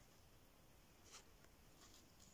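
Near silence: faint background hiss with a soft, brief scratch about a second in and a weaker one near the end.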